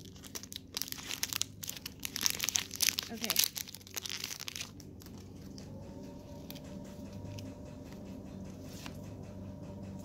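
Foil wrapper of a Pokémon booster pack being torn open by hand, with a dense run of crinkling and crackling that stops about five seconds in.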